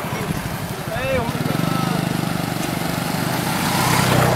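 Motorcycle engine running as the bike passes close by, growing louder from about a second and a half in with an even, pulsing beat. A person's voice calls out briefly about a second in.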